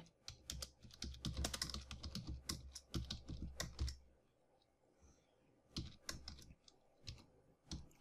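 Computer keyboard typing: rapid runs of keystroke clicks, stopping for about a second and a half midway, then resuming briefly.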